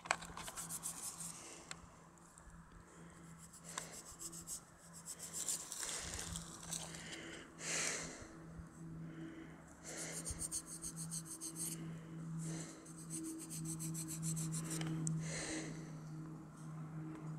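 Fingers rubbing dirt off a small dug-up metal relic, in several short spells of scratchy rubbing, over a steady low hum.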